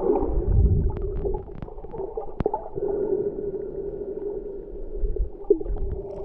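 Muffled underwater sound picked up by a submerged camera: a steady hum with low rumbling swells about half a second in and again near the end, and one sharp click a little before the middle.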